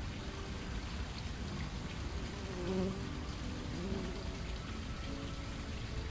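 A paper wasp's wings buzzing faintly in flight, the pitch wavering, heard a couple of times through the middle over a low steady background rumble.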